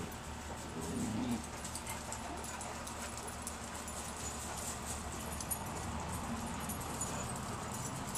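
Dogs milling about, heard faintly: a short, low dog whimper about a second in over a quiet, steady outdoor background.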